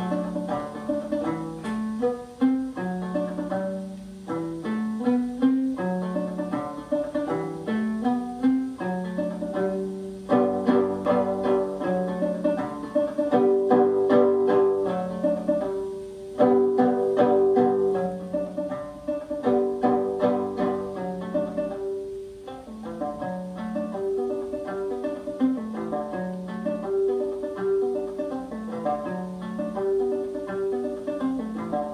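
Fretless gourd banjo playing a brisk jig, a rapid stream of plucked notes with a mellow tone.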